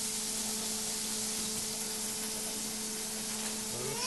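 A giant hamburger patty sizzling steadily on a hot griddle, with a faint steady hum underneath.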